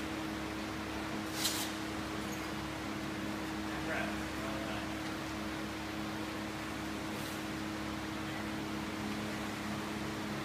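Large drum-style floor fan running with a steady hum. A short hiss comes about a second and a half in, and a fainter one about seven seconds in.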